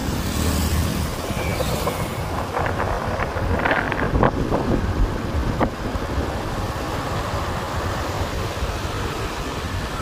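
Wind rushing over the microphone on top of a steady low rumble of road and engine noise while riding along a street among motorbikes.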